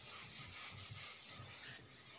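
Whiteboard duster wiping marker writing off a whiteboard: faint, repeated rubbing strokes.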